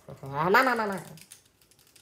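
A drawn-out wordless voice, under a second long, rising then falling in pitch, followed by faint light clicks.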